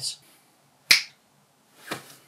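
A single sharp finger snap about a second in, followed near the end by a softer, longer swish.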